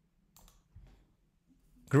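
Two faint, short clicks in a near-quiet room, then a man's voice says "Great" near the end.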